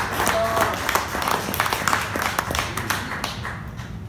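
Audience applause: many overlapping hand claps that thin out and fade near the end.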